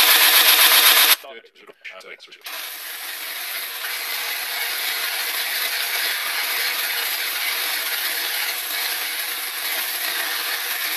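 Ultimate Edge belt sharpener running with a 60-grit belt while a spindle roughing gouge held in a jig is ground on it, a steady grinding hiss. The noise cuts out about a second in, returns after about a second and runs on steadily at a somewhat lower level.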